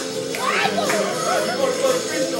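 Music playing while children's voices chatter and call out over it.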